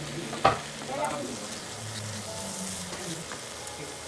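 Fried noodles sizzling in a nonstick wok as they are stirred and turned with a silicone spatula. There is one sharp knock about half a second in and a smaller one about a second in.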